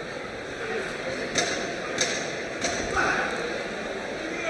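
Boxing gloves landing punches in an exchange: a few short, sharp slaps over the murmur of a crowd in a hall, with some voices shouting from ringside.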